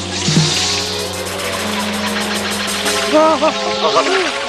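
Background score of sustained low drones under a hissing high wash, with a man's short pained cries about three seconds in.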